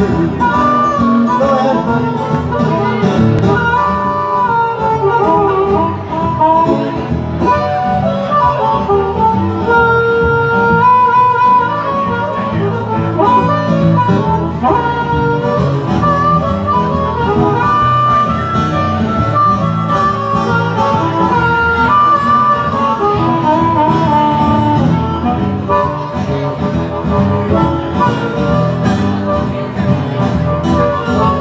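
Harmonica played live with held notes over acoustic guitar accompaniment.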